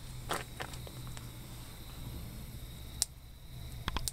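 Quiet background with a low steady hum and a few light, sharp clicks and handling noises, spread out, with the loudest near the end.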